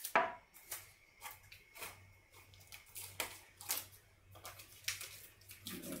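Quiet, scattered clicks, taps and rustles of hands handling a masking-tape roll and a paper-and-CD zoetrope with a pencil taped through its middle. The tape roll is set down on a wooden table, and the sharpest click comes just after the start.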